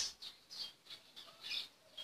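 A small bird chirping several times with short, high calls. There is a sharp click right at the start.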